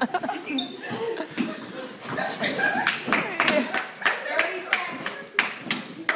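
Sharp smacks of strikes landing on a padded attacker suit, coming thick and fast in the middle seconds, with voices shouting and calling out.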